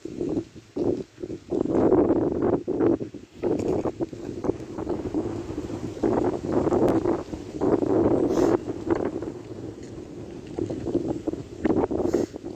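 Wind gusting across the phone's microphone, an uneven rumbling buffet that swells and drops every second or so.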